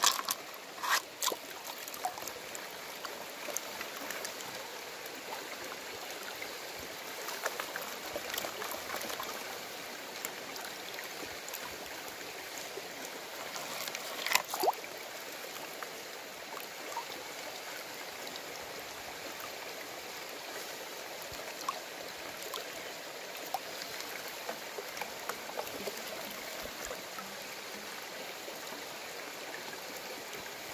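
Creek water running steadily as a plastic gold pan is swirled and dipped in it to wash out gravel and clay, with a few short splashes or knocks, the sharpest about halfway through.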